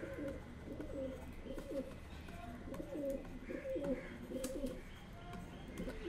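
A dove cooing over and over in a steady series of short calls.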